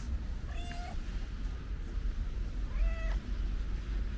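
A cat meowing twice, two short calls about two seconds apart, over a steady low rumble.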